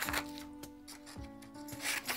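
Scissors cutting through a sheet of colored paper, the blades rasping through it in a few strokes. Soft background music with held notes plays underneath.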